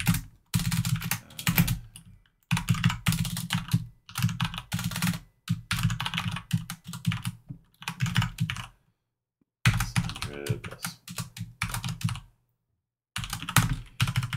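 Rapid typing on a computer keyboard, in bursts of keystrokes broken by short pauses, with two longer silent breaks in the second half.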